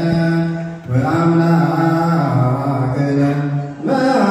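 A group of voices chanting Ethiopian Orthodox liturgical chant in unison, in long held notes that shift pitch slowly. The chant breaks briefly about a second in and again near the end.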